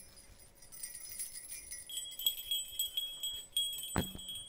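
Small gold jingle bells on hanging strings being shaken, tinkling lightly, with a clear ringing tone joining about halfway through and a sharp click near the end.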